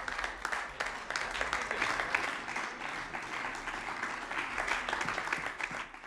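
Applause from the members of a parliament chamber at the end of a speech: a dense, sustained patter of many hands clapping, dropping away right at the end.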